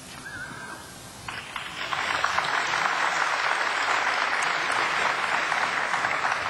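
Audience applauding in a large hall. It starts about a second in, swells quickly and then keeps up steadily.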